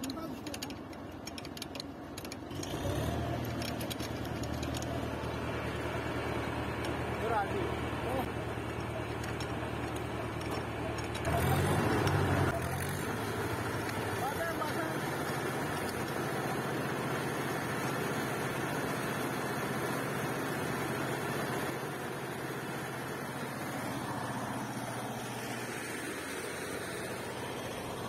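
An engine driving a belt-driven three-phase synchronous generator: a steady running hum comes in about three seconds in and carries on. It is briefly louder around the middle, as the engine is sped up to bring the generator's output up towards 400 volts.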